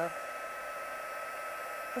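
Stampin' Up! heat tool blowing steadily with an even hiss and a faint high whine, melting clear embossing powder on stamped card.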